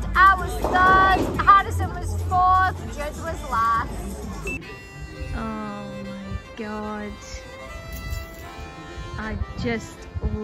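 High-pitched voices calling out over a low background hum for the first few seconds. About four and a half seconds in, a short piece of music with held, sustained notes takes over.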